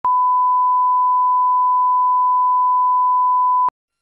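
Steady 1 kHz sine-wave test tone, the reference tone that goes with SMPTE colour bars. It cuts off suddenly near the end.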